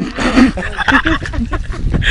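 People's voices calling out loudly, their pitch sliding up and down, over a steady low rumble with scattered clicks.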